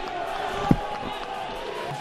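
Low, steady background noise of the match broadcast, with a faint held tone and a single thump about two-thirds of a second in.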